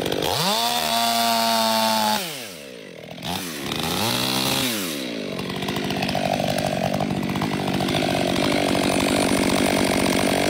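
Two-stroke chainsaw making the back cut through a standing tree trunk when felling it. It runs free at high revs for a moment, drops toward idle about two seconds in and is blipped twice. From about halfway on it is back under load in the wood.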